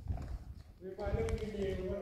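Footsteps on concrete and grit as the person filming walks along the pool edge. A steady droning tone with a few pitch lines comes in about a second in.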